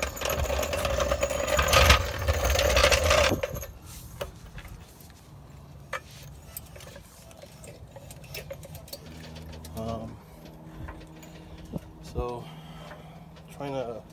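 Steel floor jack rolled over concrete: a loud rattling rumble for the first three seconds or so, then scattered quieter clicks and knocks as it is set under the car.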